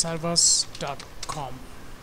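Typing on a computer keyboard as a web address is entered, under a man's voice in the first second and a half.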